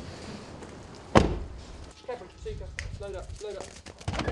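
A car door on a Mitsubishi Shogun 4x4 shut once with a single loud thud about a second in. Quieter voice-like sounds follow.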